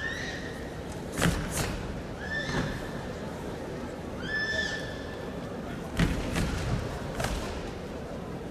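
Three karateka performing the team kata Anan in unison: sharp snaps of their gi and stamps of bare feet on the mat, loudest about a second in and at six seconds. Three high, drawn-out squeals sound in between, at the start, about two seconds in and about four seconds in.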